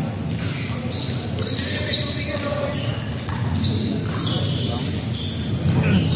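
Basketball being played on a hardwood court in a large, echoing gym: sneakers squeaking in many short high-pitched chirps and a basketball bouncing, with voices in the background.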